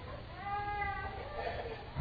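A faint, high-pitched, voice-like cry lasting under a second, starting about half a second in, over quiet room tone.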